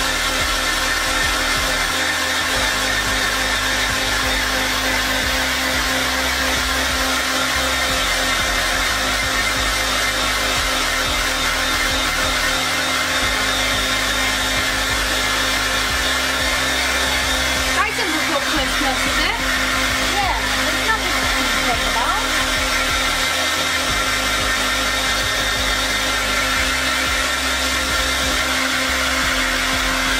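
Handheld electric hair dryer running steadily, a constant rush of air with a steady hum, as it blows on wet, gelled hair, with a brief clatter about 18 seconds in.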